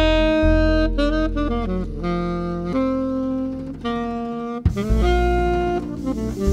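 Tenor saxophone playing a jazz melody line in a series of held notes, over double bass and keyboard accompaniment from a live jazz quartet.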